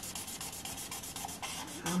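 Marker tip scratching across paper in quick, evenly repeated back-and-forth hatching strokes, colouring in a section of a drawn pattern.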